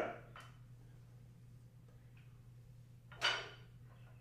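A man's short, sharp exhale through the mouth about three seconds in, as he presses a pair of dumbbells, over a faint steady low hum.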